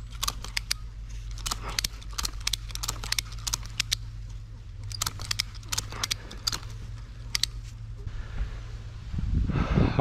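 Irregular sharp clicks and crackles from a rope and ratchet strap being handled in among tree branches, over a low steady hum.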